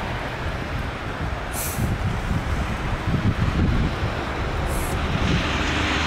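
Outdoor night ambience: a steady rushing noise, with an irregular low rumble swelling from about two to four seconds in and two brief high hisses, just before two seconds and just before five seconds in.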